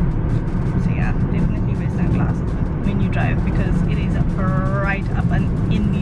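Steady low rumble of a car's engine and tyres heard inside the cabin while driving, with short snatches of a voice over it, the longest a little before the end.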